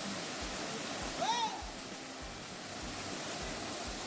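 Small waterfall plunging into a rock pool, a steady rush of falling water. About a second in, a brief rising-then-falling voice sound cuts over it.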